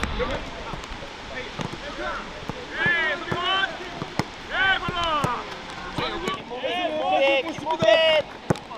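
Footballs kicked back and forth in a passing drill: repeated sharp thuds of boots striking the ball, with players' shouted calls in between.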